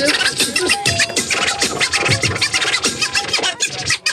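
A DJ scratching a vinyl record on a turntable over a hip-hop beat: fast, dense strokes with pitch sweeping up and down. The sound drops out for a moment right at the end.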